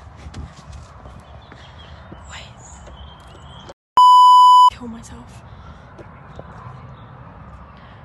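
A single loud censor bleep: one steady electronic tone lasting under a second, about halfway through, with the sound cut to silence just before it. Around it, faint rustling and small knocks.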